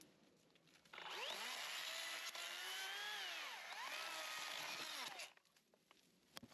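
Makita 18-volt cordless electric chainsaw running for about four seconds, starting about a second in. Its motor whine dips in pitch midway as the chain bites into bamboo, then winds down when the trigger is released.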